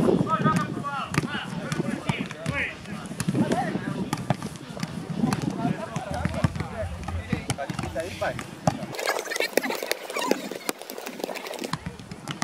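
Footballs thudding again and again as players head and toss them back and forth in a training drill, with the players' voices calling out over the knocks.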